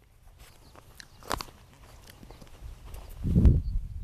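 Handling noise close to the microphone: scattered small clicks and rustles, a sharper click about a second in, then a louder low rubbing rumble in the last second and a half as a hand holding a sheet of paper comes right up to the camera.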